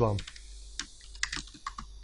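Computer keyboard typing: a short quick run of keystrokes about a second in, typing a short word.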